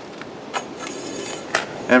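Plastic wire spools sliding along a steel EMT conduit pipe: a short scrape with two light clicks, about half a second and a second and a half in.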